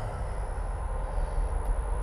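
Steady low rumble and hum of running reef-aquarium equipment, water pumps and flow, with a faint steady high-pitched whine over it.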